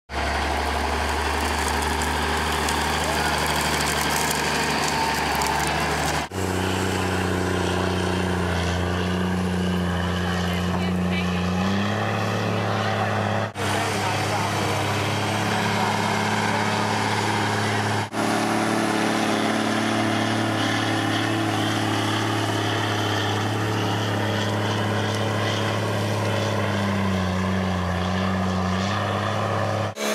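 Diesel engine of a large John Deere four-wheel-drive tractor running steadily under load as it pulls a dirt scraper, its note rising and dipping slightly. The sound drops out briefly three times.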